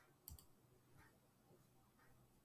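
Near silence: room tone, with one faint short click about a third of a second in.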